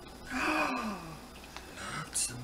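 A woman's wordless, sigh-like 'ohh' of admiration whose pitch falls steadily over under a second. A short breathy hiss follows near the end.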